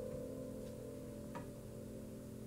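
Upright piano's last notes sustaining and slowly dying away, several pitches held together, with two faint clicks less than a second apart.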